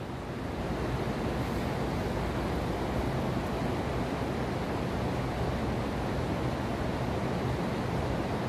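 Steady rushing noise of heavy rain falling on the growing house roof, with a faint low hum underneath.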